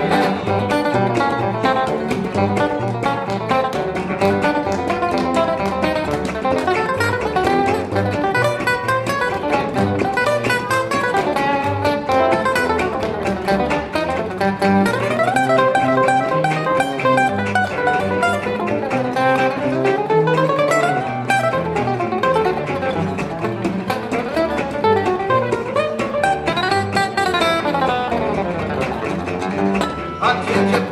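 Gypsy jazz trio playing an instrumental passage: a Selmer-Maccaferri-style oval-hole acoustic guitar plays fast runs that sweep up and down the neck, over strummed rhythm guitar and plucked double bass.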